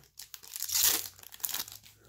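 Foil wrapper of a Magic: The Gathering booster pack crinkling and tearing as it is opened. The main rustle comes about half a second in, with smaller crackles near the end.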